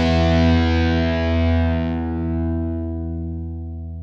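The final distorted electric-guitar chord of a fast melodic punk song ringing out after the band stops, held as one steady chord that slowly fades away.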